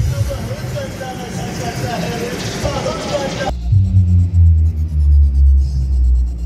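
Background chatter and noise, then about halfway through a large DJ sound system cuts in with very loud, deep bass notes in a pulsing pattern, almost nothing but low end.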